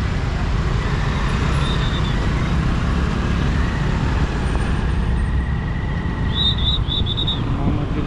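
Steady road and traffic noise heard from a moving motorcycle in dense city traffic of cars, scooters and buses, a constant low rumble. A quick run of short, high-pitched beeps comes in about six seconds in.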